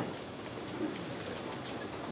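Steady hiss of room noise with faint rustling and light knocks as people move about after a press briefing ends.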